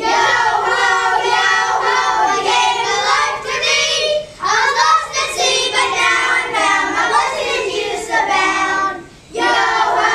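Children singing a song in sung phrases, with short breaks about four seconds in and near the end.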